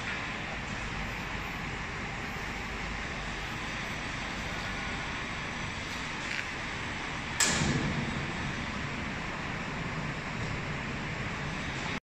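Steady hiss of running factory machinery around an EPS pre-expander line, with a sudden loud burst of noise about seven and a half seconds in that dies away over about a second, and a smaller one just before it.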